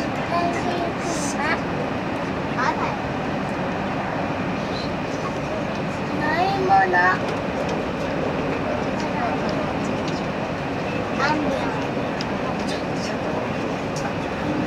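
JR Hokkaido 789 series electric train running at speed, heard from inside the passenger car as a steady rail and running noise. Passengers' voices come through now and then, loudest about seven seconds in.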